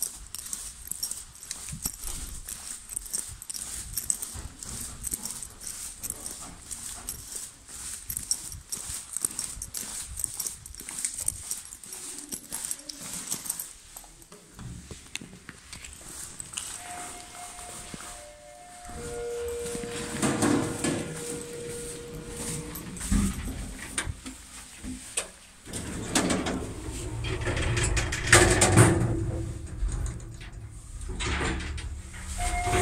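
Footsteps and handling noise, then a Shcherbinka (ЩЛЗ) lift arriving with a few steady electronic tones stepping down in pitch, which is its unusual floor-arrival signal. Its doors open and later close, and the car starts to move.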